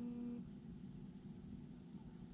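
A steady humming tone on one pitch cuts off abruptly about half a second in, leaving only a faint low rumble.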